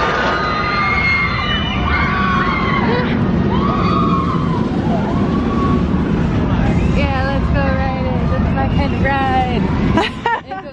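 Steel roller coaster train running along the track with a steady low rumble, with riders' screams rising and falling over it. Repeated short falling cries come in the last few seconds.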